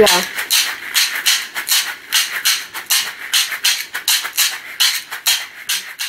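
A pair of caxixi, woven basket shakers filled with seeds, shaken in a fast, steady rhythm of about five crisp, rattling strokes a second.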